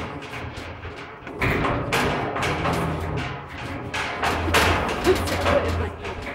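Mine skip being hoisted up a timbered shaft at about 500 feet per minute. It makes a steady low rumble with a rapid, irregular clatter of knocks, which gets louder about a second and a half in.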